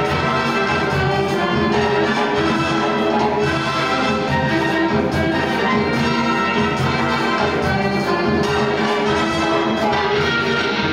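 Live orchestral music with a prominent brass section, played together with an electric guitar.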